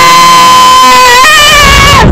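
A child screaming on a roller coaster: one long, high-pitched scream held on a steady pitch, stepping up a little higher just past a second in.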